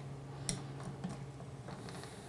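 A few light metal clicks of a 9 mm wrench being fitted onto a 3D printer's brass nozzle and heater block, the sharpest about half a second in, over a faint low hum.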